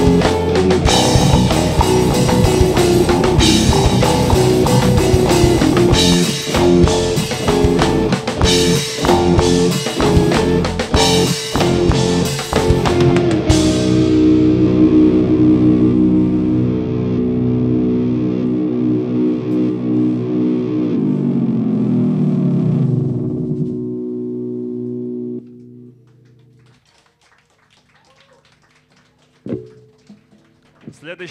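Live instrumental rock band playing loud: electric guitar, keyboard and drum kit. About halfway through the drums stop and the held guitar and keyboard chords ring on. Later the chords slide down in pitch and die away, leaving faint room noise near the end.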